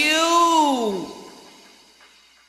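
The backing music stops and a lone voice holds one drawn-out note that arches up and then slides down in pitch for about a second, fading out in a trail of reverb at the end of the song.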